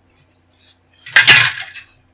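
A loud, brief clatter of hard plastic model parts and tools on the cutting mat about a second in, lasting about half a second, after two faint handling taps.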